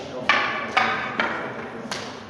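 Sparring weapons clashing: four sharp strikes, the first three about half a second apart and the last a little later, each with a short ringing echo.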